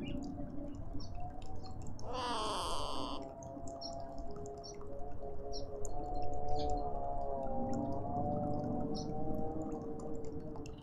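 Garden ambience with faint, scattered small-bird chirps. About two seconds in, a loud pitched sound lasts about a second. From about four seconds on, a steady hum of several tones runs on.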